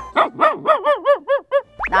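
A rapid run of about nine short, high yaps like a small dog's, each rising and falling in pitch, coming faster and fading, followed by a quick rising glide near the end.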